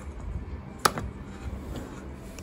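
A single sharp plastic click about a second in as the shavings tray of a Bostitch electric pencil sharpener is pulled out of the housing, over faint handling noise.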